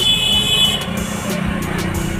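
Motorcycle traffic running past on the road, a steady low engine hum, with a short high-pitched tone in the first second.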